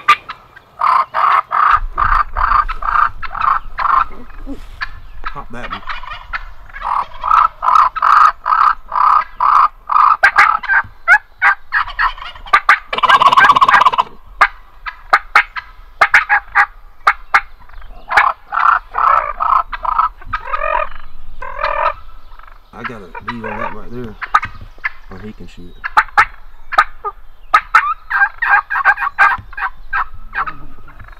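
Wild turkey gobblers gobbling close by, again and again, in rattling bursts every few seconds. The loudest gobble comes about 13 seconds in.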